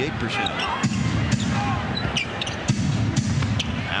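Arena crowd noise during live basketball play, with the repeated knocks of a basketball bouncing on the hardwood court.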